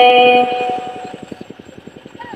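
Red Dao hát lượn folk song: a long held sung note fades out within the first second. What is left is a soft, rapid, even pulsing from the backing track, a pause between sung lines.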